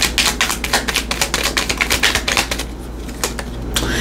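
A deck of tarot cards being shuffled by hand: a rapid run of crisp card clicks that thins out about three seconds in.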